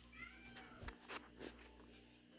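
A short, high, faint cry near the start, then four or five light knocks and taps as a pet rabbit moves about its carpeted wire pen.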